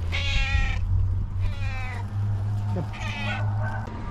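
Tuxedo cat meowing loudly three times, about a second apart: a hungry cat asking to be fed.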